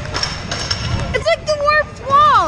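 Rumbling, clattering noise for about the first second, then a child's voice calling out in long, high, wordless sounds that bend up and down.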